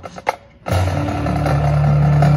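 Marching band music: a few sharp percussion strikes, then about two-thirds of a second in the band comes in with a loud, sustained low chord that holds steady.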